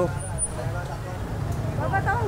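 Steady low rumble of background street traffic, with a man's voice starting again near the end.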